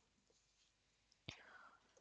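Near silence, with one faint short sound about a second in.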